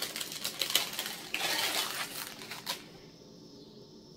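Small metallic clicks and light rustling of thin silver-tone chain necklaces and their plastic packaging being handled, dying down about three seconds in.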